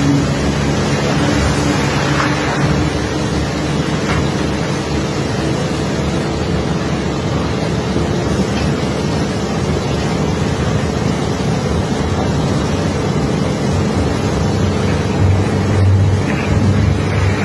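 A steady engine drone with rushing water from hoses washing down crushed iron ore. A deeper rumble swells near the end.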